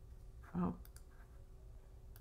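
A few faint, sharp clicks from computer use as a web page is navigated, over a steady low hum.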